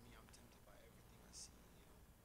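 Near silence: faint, distant speech too far from the microphone to make out, with a brief hissing 's' about one and a half seconds in, over a low steady hum.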